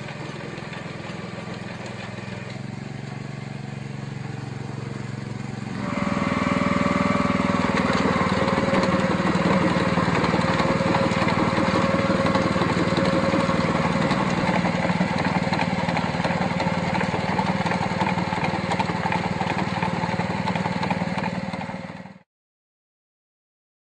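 Small petrol engine of a walk-behind lawn aerator running steadily while the machine works across the lawn. About six seconds in it gets louder, with a steady whine added.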